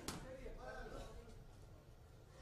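A single sharp smack of a boxing glove landing, right at the start, followed by a faint voice calling out in the hall.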